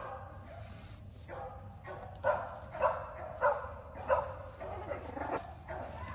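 Litter of newborn puppies, just over a week old, whimpering and squealing in a run of short high cries, roughly two a second.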